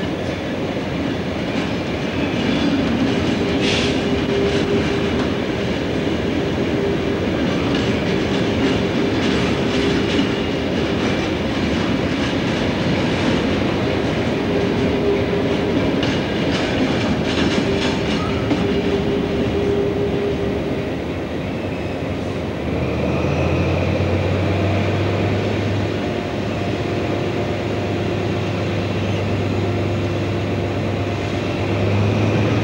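Freight train of covered wagons rolling past, wheels clattering over rail joints with an intermittent squeal. About 23 s in this gives way to the steady low drone of an InterCity 125 power car's diesel engine running.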